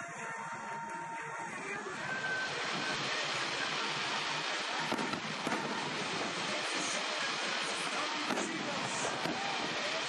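Music ends about two seconds in and gives way to the steady rumble and crackle of an aerial fireworks display, with several sharp bangs through the rest.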